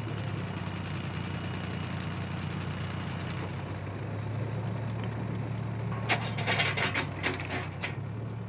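Diesel engine of heavy plant (tractor and backhoe loader) running steadily at a low rumble. About six seconds in comes a quick run of clattering knocks.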